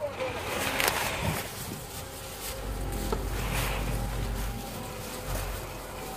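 Indistinct voices over a steady outdoor background noise.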